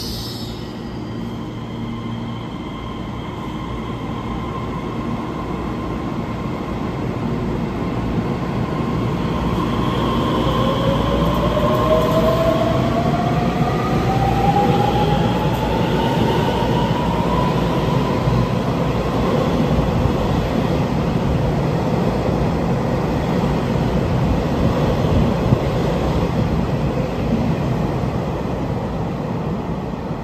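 Taiwan Railway EMU3000 electric multiple unit pulling out along the platform. Its motor whine rises steadily in pitch as it picks up speed over the rumble of wheels on rail, and the sound grows louder as the cars pass close by. There is a short hiss at the very start.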